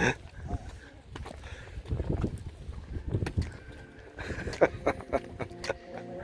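Scattered soft chuckles and breathy laughs from a few people, in short irregular bursts.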